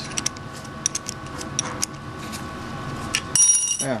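Metal tools clicking and clinking on a Delphi DP200 diesel injection pump as its drive-shaft locking tool is fitted and bolted up. There is one short ringing metallic clink near the end, over a faint steady hum.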